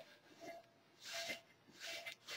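Cotton rag rubbing over the waxed rim of a mold, a few faint strokes as mold release paste wax is buffed to a gloss.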